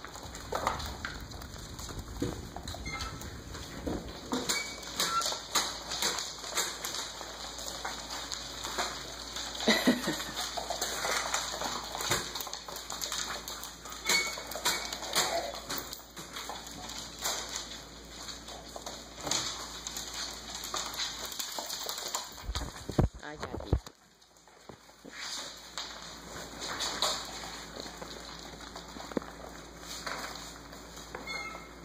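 Puppies about six weeks old scrambling and nursing on their mother dog, with newspaper crinkling, paws scuffling and occasional small squeaks. A few heavy thumps come about three-quarters of the way through.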